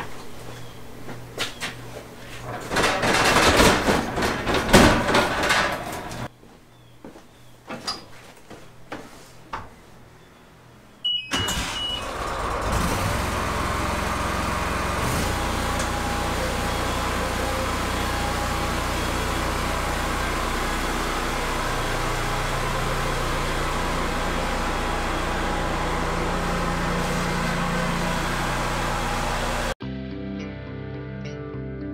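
Engine of a Walker riding lawn mower starting about eleven seconds in and then running steadily, after a stretch of irregular clattering noises.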